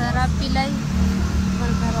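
A motor vehicle engine running nearby, a steady low drone under a brief voice.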